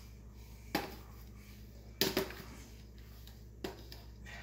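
Kitchenware being handled on a counter: three short knocks, about a second in, about two seconds in (the loudest) and near the end, over a faint steady low hum.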